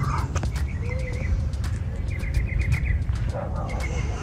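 Small bird chirping, with a quick run of about six short notes a little past halfway and a few scattered chirps around it, over a steady low rumble.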